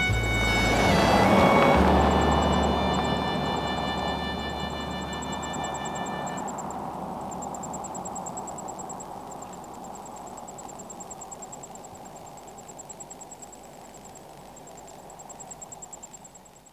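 A car passes on the road and fades away as it drives off, its tyre and engine noise loudest in the first two seconds and dying down slowly. Background music plays over it and ends about six seconds in, and a faint high pulsing chirp runs throughout.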